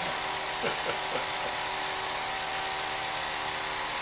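Home-movie film projector running steadily, a mechanical whir with a faint hum as the film feeds through, and faint voices murmuring about a second in.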